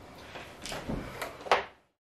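A few short knocks and clunks of handling, the loudest about one and a half seconds in, after which the sound fades out.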